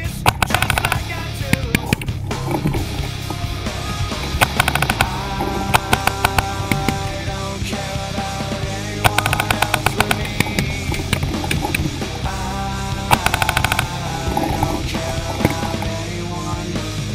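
A rock music soundtrack with several bursts of rapid paintball marker fire, strings of quick shots that start and stop repeatedly.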